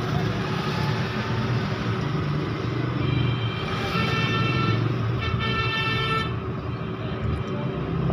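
Background road traffic running steadily, with a vehicle horn sounding for about three seconds in the middle.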